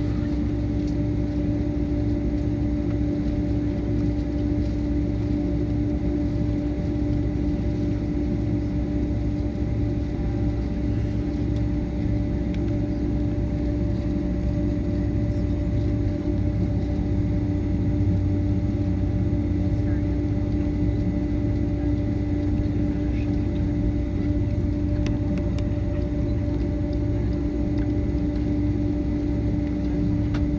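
Inside the passenger cabin of a Boeing 767-300ER taxiing: a steady low drone of the engines at taxi power, with a constant hum running through it.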